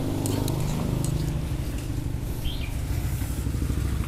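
A motor running steadily with a low hum, and a bird chirping briefly around the middle.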